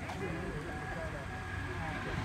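Indistinct chatter of people talking at a distance, over a steady low rumble of outdoor background noise.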